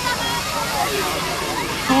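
Fire hose spraying a jet of water and foam onto a burning car: a steady rushing hiss, with the voices of onlookers over it.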